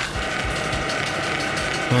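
A steady, dense mechanical rattle of very fast clicks, with a few soft low thumps in the first second.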